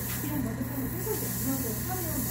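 Voices talking in the background over a steady hiss, with short scratchy strokes of sandpaper rubbing on a plastic Nendoroid hair part to smooth red putty, the clearest about half a second in.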